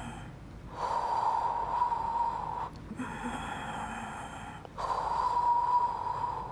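A woman breathing hard through the Pilates Hundred, one breath cycle paced to each five-count of arm pumping. Two long audible breaths of about two seconds each, with a quieter pause between them.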